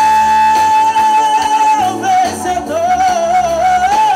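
Male vocalist singing live with a band of electric guitars, drums and keyboard. He holds one long note for about two seconds, then moves a little lower into a wavering line with vibrato over the steady accompaniment.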